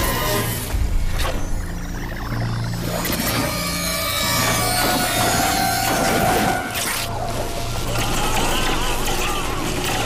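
Instrumental intro music without singing: a steady low drone under sustained tones, with wavering, gliding tones coming in near the end.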